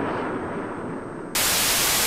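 Low rumbling noise from a jet fighter's crash fireball in old video footage. About a second and a half in, it cuts abruptly to loud, even TV static hiss.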